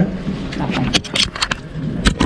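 Handling noise from a jostled body-worn camera: a quick run of clicks, rattles and rubbing as it is brushed and knocked.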